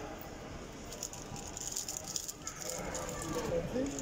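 Indistinct voices of people talking in a busy hall, with faint scattered clicks and rattles; a voice becomes clearer in the second half.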